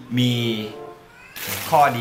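A man speaking over quiet background music. A short rustle of the paper wrapping around the food comes about one and a half seconds in.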